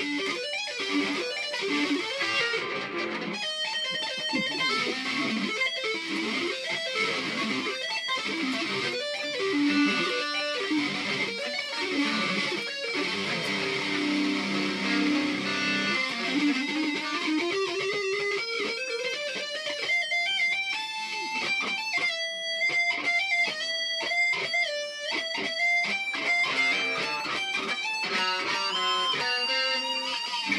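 Single-cutaway solid-body electric guitar played as a fast metal lead: rapid picked runs, then a long climbing glide up in pitch about halfway through, ending in high held notes with bends.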